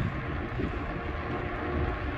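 Wind buffeting a phone's microphone while it is carried along, a steady, uneven low rumble with a brief click at the very start.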